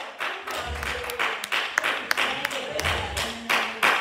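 Quick, evenly spaced percussive claps or taps, about five a second, with faint held notes underneath.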